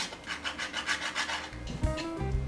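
A 3D-printed plastic part filed against a flat hand file in quick back-and-forth rasping strokes, taking its width down a little. The strokes stop about a second and a half in.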